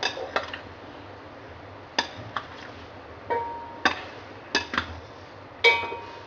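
A utensil clinking against a glass bowl while fruit chaat is stirred and mixed: sharp irregular clinks about once or twice a second, a couple of them ringing briefly.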